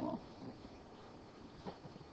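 The last of a spoken word, then low room tone with a faint short tick about a second and a half in.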